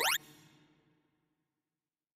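Synthesized tones from a sorting-algorithm visualizer: the top of a fast rising pitch sweep, played as the program steps through the finished, sorted array, cutting off about a fifth of a second in and fading out within about a second.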